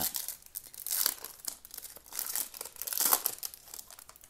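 Trading card pack wrapper crinkling and tearing as it is opened, in several short rustling bursts.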